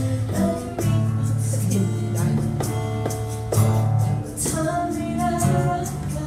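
Live acoustic band playing a song: a woman sings into a microphone over strummed acoustic guitar and hand drums keeping a steady beat.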